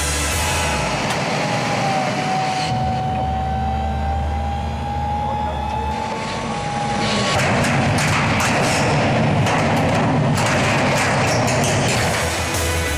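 Hydraulic excavator with demolition shears working: the engine runs under a long, steady whine that glides slightly in pitch. About seven seconds in, a louder, rough stretch with sharp cracks begins as the Hardox 600 shear jaws close on the wall of a Hardox 450 steel container.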